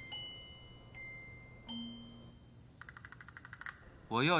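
Faint chime notes: a few soft, high bell-like tones struck one after another and left ringing, then a quick run of rapid tinkling strokes for about a second near the end.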